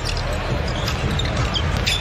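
Basketball game court sound: a ball being dribbled on the hardwood floor over steady arena crowd noise.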